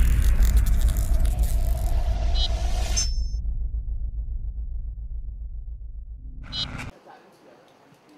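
Logo-sting sound effect: a deep boom that decays into a long low rumble, with a bright shimmering whoosh over it for the first three seconds. A brief sparkling chime comes near the end, and the sound cuts off suddenly just before seven seconds.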